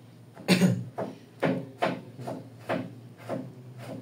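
A series of about eight irregular knocks and scrapes, the loudest about half a second in, over a steady low hum.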